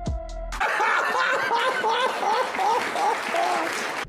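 Electronic music with a drum beat for the first half second, then a burst of audience laughter with applause that stops suddenly near the end.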